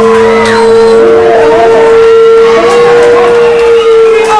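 Loud amplifier feedback: one steady held tone, with higher squealing tones sliding up and down over it.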